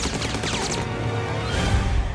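Loud film-trailer music with sound-effect hits and several falling whistling sweeps in the first second.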